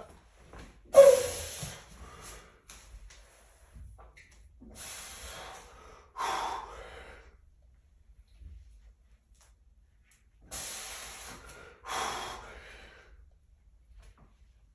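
A man breathing hard through a heavy, near-maximal dumbbell flat bench press, with about five forceful breaths blown out between reps. The loudest comes about a second in.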